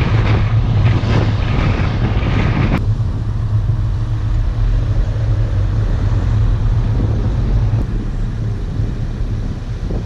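Car driving slowly: a steady low rumble of road and wind noise, with the higher hiss falling away suddenly about three seconds in.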